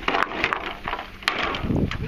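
Bamboo poles knocking and clattering against each other as they are handled, with several sharp knocks.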